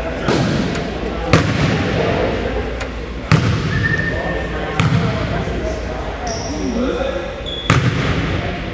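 Basketballs bouncing on a hardwood gym floor: four sharp, echoing thumps spread over a few seconds.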